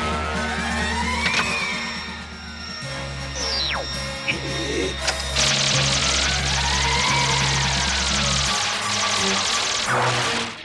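Dramatic background music under space-battle sound effects in a cartoon. Sweeping tones rise and fall twice, a whistle falls about a third of the way in, and from about halfway a long, fast-crackling hiss of laser fire continues almost to the end.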